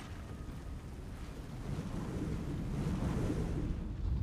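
Low, wind-like rumble of a film's battle-scene sound effects, swelling a little past the middle.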